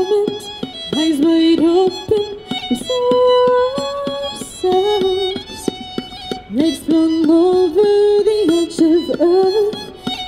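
Fiddle played live with a woman singing: a slow melody with held notes and frequent upward slides into the notes.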